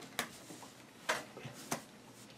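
Kharnage game cards being flipped over and laid down on a felt-covered table: three short, soft clicks, one just after the start, one about a second in and one near the end.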